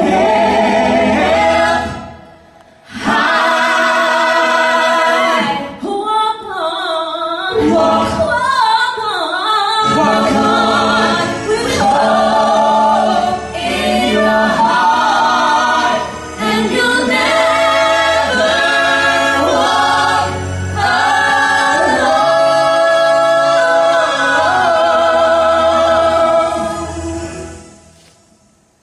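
A five-voice mixed a cappella group, men and women, singing in close harmony through microphones. The voices break off briefly about two seconds in, and the song fades away at the end.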